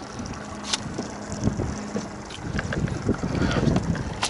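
Wind buffeting the microphone and water slapping a small boat's hull while a spinning reel is cranked in against a hooked fish, with scattered light clicks. A low steady hum stops about halfway through.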